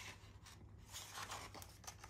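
A picture book page being turned by hand: faint paper rustling in a few soft swishes, with a light click near the end.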